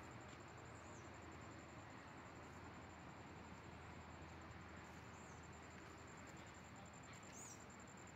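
Near silence: faint hiss with a thin, high, steady tone, and three brief high chirps from a small bird, about one, five and seven seconds in.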